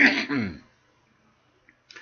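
A man clears his throat once, a short rasping noise with a falling voiced tone, ending in the first second.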